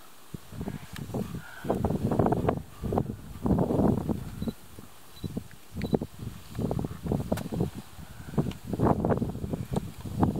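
African elephant pulling and tearing up grass with its trunk while grazing: repeated short bursts of ripping and rustling at irregular intervals.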